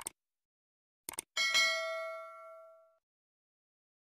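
Subscribe-button animation sound effects: short mouse clicks, then a single bell ding about a second and a half in that rings and fades out over about a second and a half.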